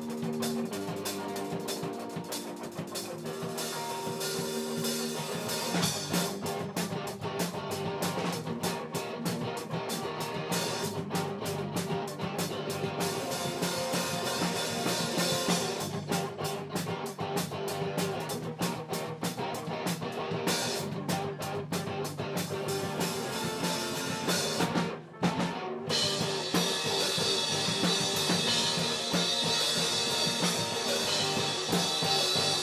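Live rock band playing a song on drum kit, guitar and bass, with steady drum strikes throughout. The music drops out for a moment near the end, then comes back in.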